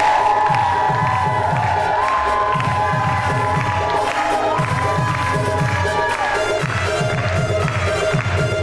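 Upbeat dance music with a deep, repeating bass beat about twice a second and a sliding melody, over a studio audience cheering.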